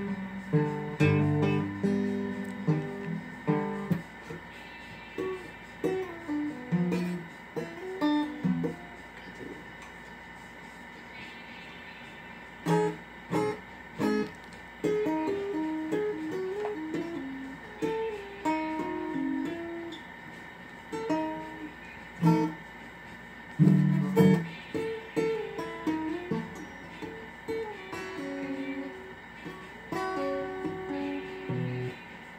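Guitar played by hand, a melody of single plucked notes with occasional louder chords, with a brief hesitation about a third of the way through.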